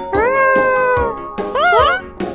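High-pitched cartoon character voice without words: one long drawn-out exclamation, then quick rising squeals near the end, over children's background music.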